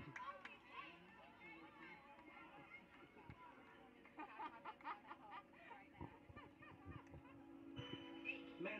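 Near silence with faint, distant voices of people around the field and a few faint knocks; music comes in near the end.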